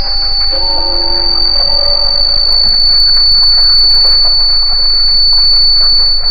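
Electroacoustic noise music: a piercing, steady high tone held over a dense hiss-and-crackle texture and a deep hum, with a few sustained mid-pitched tones that drop out after about two seconds.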